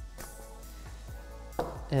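Soft background music, with a few faint clicks as the Patek Philippe Nautilus's steel bracelet is handled and slid off its cushion.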